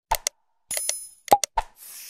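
Sound effects of a like-and-subscribe animation: several short click-pops, a brief bell-like ding about a second in, and a whoosh near the end as the graphic blurs out.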